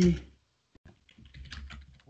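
Typing on a computer keyboard: a run of quick, light keystrokes starting about a second in.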